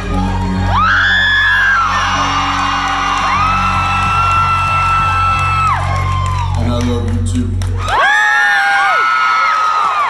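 Live band music with electric guitar, bass and a man singing into a microphone, while the audience whoops in long, high, held cries. The band's bass stops about eight seconds in, and the whooping and cheering carry on.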